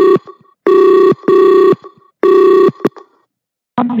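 Telephone ringing over the line. Loud electronic rings of about half a second each, some in pairs, stop about three seconds in.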